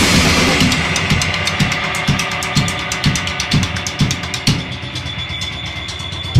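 A rock band's drum kit plays a steady beat: quick cymbal strokes and a bass drum about twice a second. The full band's loud guitar wash fades out during the first second or so, leaving the drums alone.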